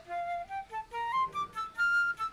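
A flute playing a simple tune of short separate notes that climb step by step, about eight notes rising over two seconds.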